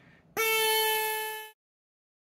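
ZOIC PalaeoTech Trilobite pneumatic air scribe running at 90 psi: a steady high-pitched buzz from the reciprocating stylus, with exhaust air hissing. It starts about a third of a second in and fades out after about a second.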